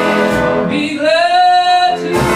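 Jazz big band playing live, saxophones and brass holding sustained chords. About a second in, one strong held note rises slightly and stands out over the band until near the end.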